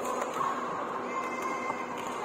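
A badminton racket smashing the shuttlecock gives one sharp crack at the start. About a second later comes a short high squeak of sneakers on the court floor, over the steady background noise of a busy sports hall.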